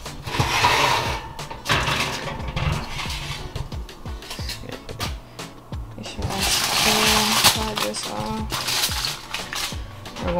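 Metal baking tray clanking against the oven rack and the counter as it is taken out of the oven, with aluminium foil crinkling, over background music.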